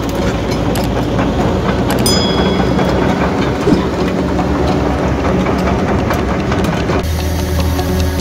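Steel tracks of a Hitachi ZX130LCN excavator clanking and rattling in a dense, irregular clatter as the machine travels.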